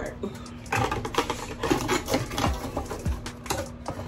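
Thin cardboard box being handled, a dense run of crackling rustles and small taps starting about a second in.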